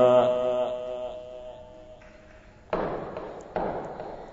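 The end of a melodic Quran recitation: the reciter's last held note cuts off right at the start and its echo through the loudspeakers dies away over about two seconds. Near the end come two sudden bursts of noise about a second apart, each fading quickly.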